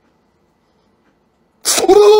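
Near silence, then near the end a sudden loud sneeze-like blast from a man's mouth that runs straight into a held, steady-pitched vocal cry as he blows clear jelly strands out from between his lips.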